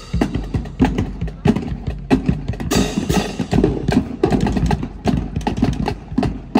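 Marching drum line playing a cadence: field snare drums, bass drums and crash cymbals struck in rapid rhythm, with a loud crash about three seconds in.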